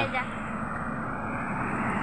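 Road traffic on a highway: a truck approaching, its steady noise slowly growing louder.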